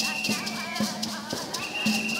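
Church music: hand shakers beating a steady rhythm about twice a second, with a congregation singing over it.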